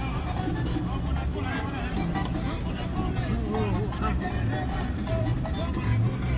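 Inside an SUV's cabin, a steady engine and road rumble as it climbs a rough mountain road in two-wheel drive. Music and voices are heard over it.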